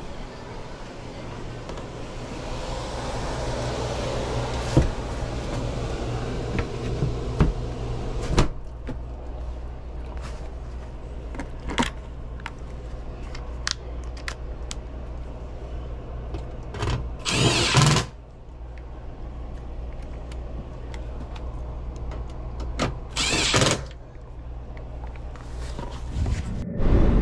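Cordless driver whirring twice in short runs, fastening the access-panel screws of a Carrier air handler, with scattered clicks and knocks of handling. Underneath, the running air handler blower gives a steady low hum.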